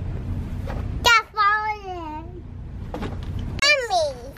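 A toddler's high-pitched sing-song call: one long note about a second in that slides down in pitch, then a shorter falling call near the end.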